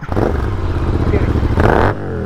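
Royal Enfield Continental GT 650 parallel-twin engine idling: a steady low rumble, with a short louder rush of noise near the end.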